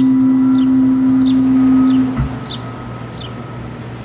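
Amplified acoustic guitar: a strummed chord rings out and is held for about two seconds, then damped, leaving a faint ringing tail. A bird chirps over it, short high falling chirps about seven times, evenly spaced.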